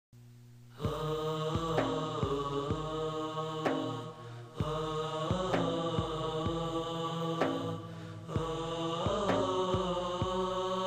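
Nasheed introduction: a vocal chorus sings sustained, harmonised chords over regular percussive hits, entering about a second in with short breaths between phrases. The sound is slightly dull, transferred from cassette tape.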